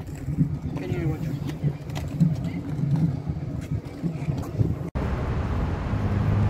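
Indistinct voices over an uneven low rumble. Wind on the microphone or riding noise. About five seconds in, it cuts abruptly to a steadier hiss.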